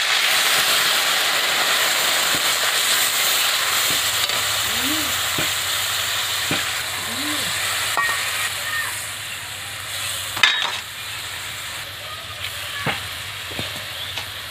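Hot oil and vegetables in an iron kadai sizzling loudly as a liquid paste is poured in. The sizzle slowly dies down as water is added and the curry settles. A sharp knock comes about ten and a half seconds in.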